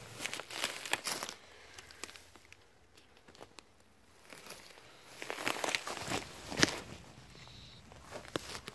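Footsteps on dry grass and loose stony ground, with grass brushing and crackling past. There are bursts of crunching in the first second or so and again from about five to seven seconds in, with a sharper click near seven seconds and a quieter stretch between.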